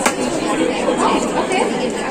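Crowd chatter, with one sharp knock just at the start: a dart striking the dartboard.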